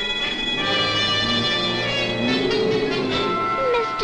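Orchestral cartoon underscore: sustained held chords, with a wavering, sliding melody line coming in near the end.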